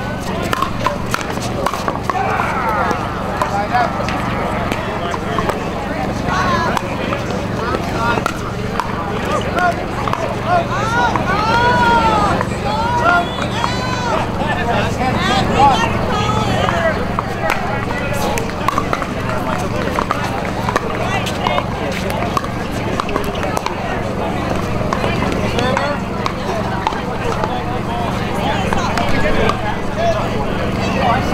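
Pickleball paddles striking a hard plastic ball during a doubles rally, short sharp pops at irregular intervals, over steady chatter from people nearby and a low hum.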